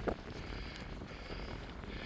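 Faint, steady seaside ambience of wind and water, with no distinct events.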